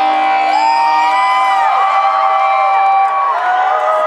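Live rock band playing through a concert PA, the singer holding long high notes that slide up and down over a steady sustained chord, with crowd cheering underneath.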